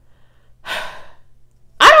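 A woman taking one audible breath, a short airy hiss about half a second in, picked up close by a clip-on microphone; her voice starts again near the end.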